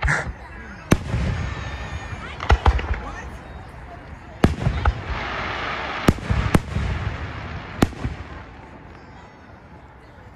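Aerial fireworks display: a series of sharp bangs from shells bursting overhead, with rumbling booms and crackle between them, dying away near the end.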